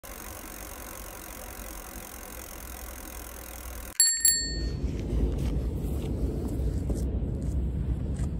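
A bicycle bell rings twice in quick succession about halfway in, its bright ring fading within half a second. Before it there is a faint steady hiss, and after it a steady low rumbling noise.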